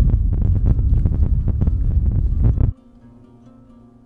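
Wind buffeting a phone microphone: a loud, rough low rumble with crackle that cuts off abruptly about two-thirds of the way through, leaving a faint steady hum.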